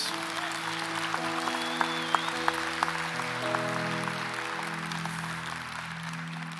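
Congregation applauding, with scattered single claps, over soft sustained chords from the worship band that change every second or so.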